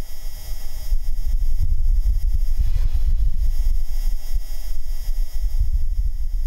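Martian wind picked up by the Perseverance rover's microphone: a low rumble that rises and falls a little, with the rover's own noise filtered out.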